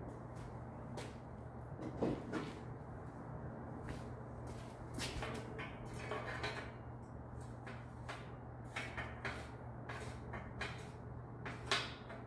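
Scattered light metal clicks and taps from a Race Face bottom bracket being handled and threaded by hand into a bicycle frame's bottom bracket shell, the sharpest click near the end, over a steady low hum.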